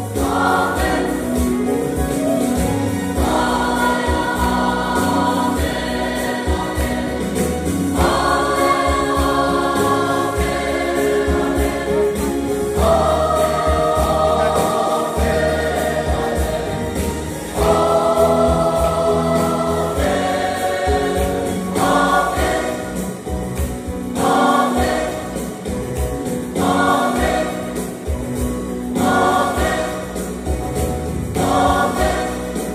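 Large mixed choir of men and women singing a Kuki-language gospel song in harmony, holding long chords that change every few seconds.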